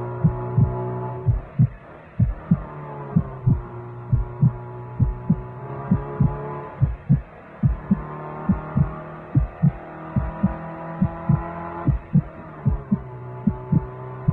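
A heartbeat: a steady run of paired low thumps, lub-dub. Under it sits a steady droning hum that shifts to a new pitch every few seconds.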